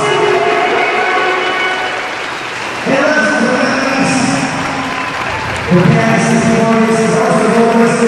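Live band playing on stage: held keyboard chords with cymbal washes over crowd applause. The band steps up in loudness with a new chord about three seconds in and again, more strongly, near six seconds.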